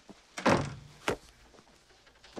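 A heavy wooden room door swung shut with a thud about half a second in, followed by a sharper knock about a second in.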